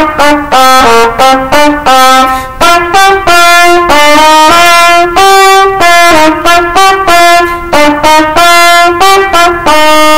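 Solo trumpet playing a melody of short, separated notes, about two to four a second, with a few longer held notes between the quicker runs.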